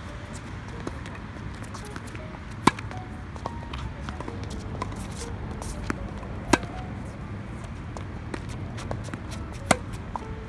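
Tennis balls struck with racquets during a baseline rally: three sharp pops about three to four seconds apart, with fainter ticks between.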